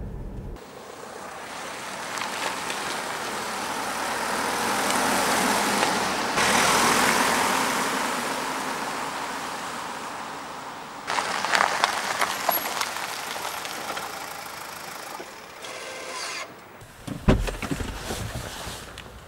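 Mazda CX-5 SUV with the 2.2-litre Skyactiv-D four-cylinder diesel driving by: tyre and engine noise swells as it comes near and fades as it drives away, then a second passage fades out. A few sharp knocks come near the end.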